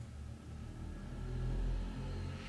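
A low rumble that swells to its loudest about a second and a half in, then eases.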